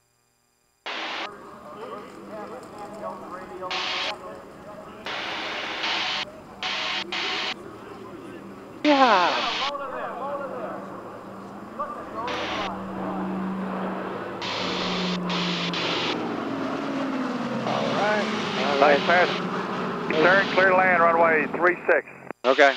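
Lockheed C-121A Constellation's four Wright R-3350 radial piston engines and propellers droning through a low flypast, with a falling pitch about nine seconds in. Short bursts of voices come and go over the engine sound.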